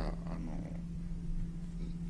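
Steady low electrical hum with low room rumble. Faint murmured voice traces in the first half-second.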